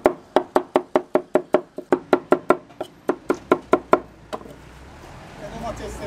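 A broad knife chopping tomatoes on a wooden cutting board: quick, even knocks about five a second, stopping after about four seconds.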